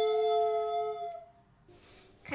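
Recorder trio holding the final chord of their piece, several steady tones together, which die away a little over a second in.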